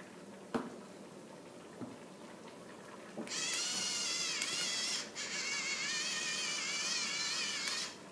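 Electric pepper mill grinding pepper: a high motor whine, wavering in pitch as it grinds, starting about three seconds in, stopping for a moment about five seconds in, then running again until just before the end.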